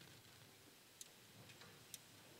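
Near silence: room tone, with two faint, sharp clicks about a second apart.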